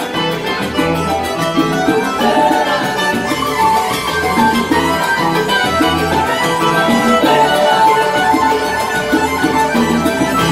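A live salsa band playing a fast Cuban dance tune, with keyboard, bass and hand percussion, heard from among the dancers on a loud, steady room recording.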